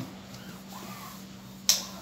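A single sharp click about three-quarters of the way through, over a steady low hum.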